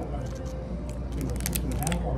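Brief pause in talk: a steady low hum, with a few quick mouth clicks and lip smacks in the second half.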